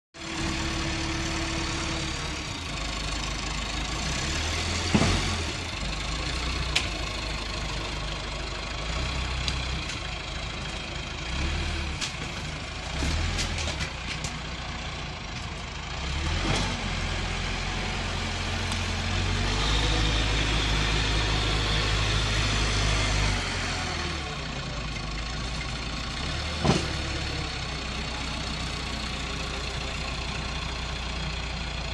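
Caterpillar 426B backhoe loader's four-cylinder diesel engine running, its revs rising and falling as the machine is driven and the loader arms work, louder for a few seconds past the middle. A few sharp clanks break in along the way.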